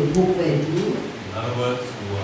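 Speech only: a woman's voice for about the first second, then a man's lower voice, both through a microphone in a room.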